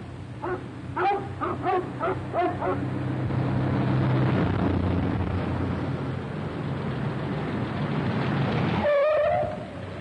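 Dogs barking, about eight short barks in the first three seconds. Then a car engine runs with a steady low drone as the car drives fast over dirt, and a short wavering squeal comes near the end.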